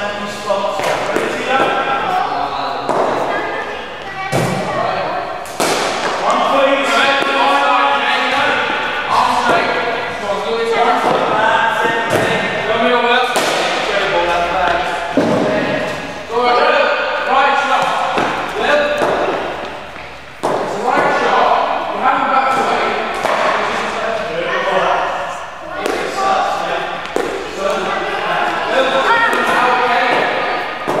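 Indistinct chatter of several voices echoing in a large hall, with sharp knocks every few seconds from cricket balls striking bat, matting and walls in the indoor nets.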